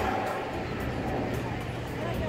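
Indistinct voices of people talking in the background over a steady low hum.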